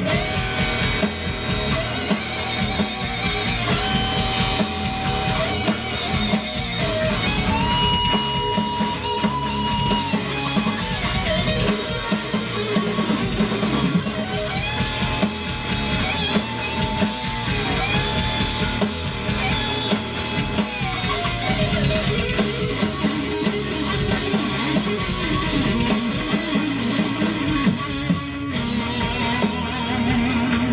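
Electric guitar solo on a Les Paul: long held notes bent up and down with vibrato, played over a rock backing track with drums.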